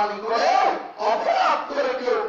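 A man's voice preaching in a loud, strained, sing-song delivery into a microphone, the pitch gliding up and down with few breaks.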